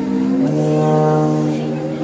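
Tuba playing held low notes: one note changes about half a second in to a long sustained note that carries on to the end.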